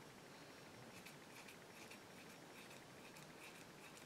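Faint snipping of small scissors cutting a synthetic wig fringe: a run of quiet cuts from about a second in until near the end.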